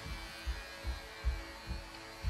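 Electric hair clippers buzzing steadily, with a series of low thumps about every half second.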